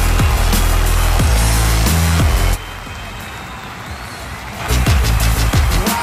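Dance music with a heavy bass beat. About two and a half seconds in, the bass drops out and the music goes quieter for about two seconds before the beat comes back.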